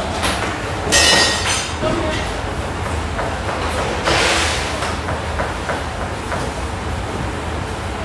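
Chef's knife chopping a red onion on a plastic cutting board: quick runs of light taps, with two louder hissing sweeps about a second in and about four seconds in, over a steady low hum.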